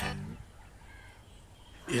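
Quiet background ambience with a faint, brief bird call about a second in.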